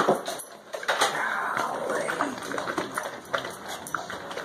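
Great Dane puppies eating treats off a hard floor: wet chewing and snuffling, with scattered sharp clicks.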